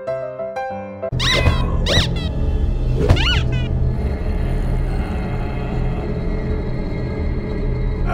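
Piano music for about the first second. Then a low, dark droning score sets in, and three high squealing cries rise and fall over it in the next two seconds.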